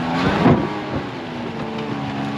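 Pickup truck engine revving up briefly about half a second in, then pulling steadily under load as the truck drives through mud on an off-road trail.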